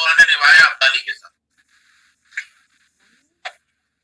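A man's voice speaking for about a second over a video-call connection, then two short clicks about a second apart and dead silence.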